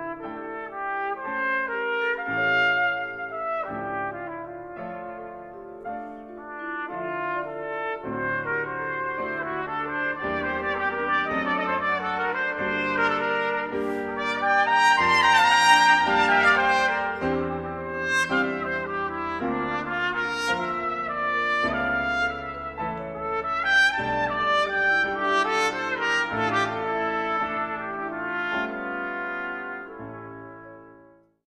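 Brass ensemble with trumpets and trombones playing sustained chords, swelling to its loudest about halfway through.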